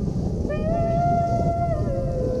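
Background music: a slow melody of long held notes, the second entering about half a second in, rising slightly, held, then sliding down near the end. Beneath it runs a steady low rumble of wind on the microphone.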